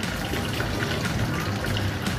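Steady background noise with faint voices in the distance.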